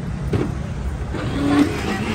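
Electric blender running steadily, its jar held shut by hand while it mixes a drink. A short low tone sounds about one and a half seconds in.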